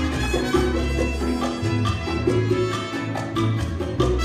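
Latin dance music playing, an instrumental passage without singing, with sustained bass notes under pitched melody lines and a steady beat.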